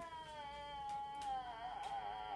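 A long, high, cat-like wail that slowly falls in pitch and turns wavering about one and a half seconds in.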